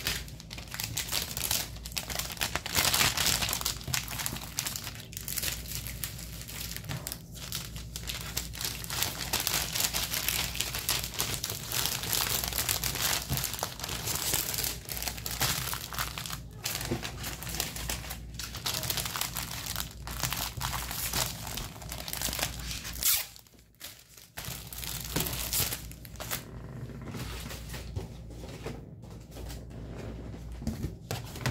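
Plastic packaging and laminated sheets rustling as they are handled, almost without a break, with a short pause a little past two-thirds of the way through.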